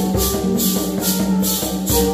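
Hymn played on a small mandolin-type instrument and guitar, with held sung or plucked notes and maracas shaken in a steady beat about two and a half times a second.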